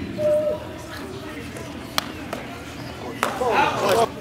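Footbag kicked during a short net rally: two sharp pats about a second and a quarter apart. A brief high squeak sounds near the start, and voices rise in the hall near the end.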